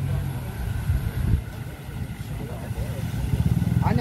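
Small motorcycle engines running, with one motorcycle approaching and growing louder near the end.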